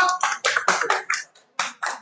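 Hand clapping: a quick, uneven run of claps, then three slower claps near the end.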